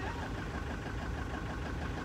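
A van's engine running at low revs, a steady rumble with a faint regular pulse, as the van drives slowly across grass.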